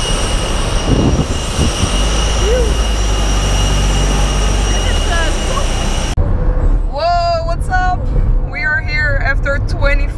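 Airport apron noise: a steady jet whine with high, even tones over a broad rush from a nearby airliner, with a few brief words over it. It cuts off suddenly about six seconds in, and voices over a low hum follow.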